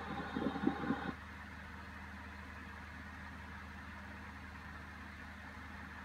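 A short stretch of voice ends about a second in, leaving a steady low hum of background noise.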